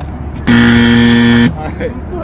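Game-show style "wrong answer" buzzer sound effect: one flat, steady blast about a second long that starts and stops abruptly, marking a missed shot.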